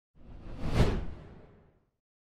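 A single whoosh sound effect for a logo intro. It swells to a peak just under a second in and dies away before two seconds.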